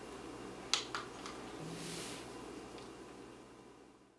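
Two light clicks of hands handling a Pocket Wizard radio trigger and its flash sync cord, about three-quarters of a second and one second in, then a soft hiss, over a steady low room hum that fades out near the end.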